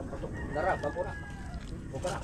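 A rooster crowing, one call about a second long starting about half a second in, with chickens clucking around it.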